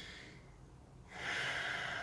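A man breathing in audibly through the nose between sentences: a soft, unpitched hiss lasting about a second, starting halfway through, after a near-quiet pause.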